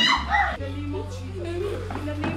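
High, wavering wordless human cries in the first half second, then quieter low vocal sounds, over a steady low drone of background music.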